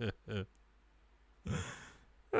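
A person's voice: a couple of short spoken syllables, then about a second and a half in, a breathy sigh that fades out.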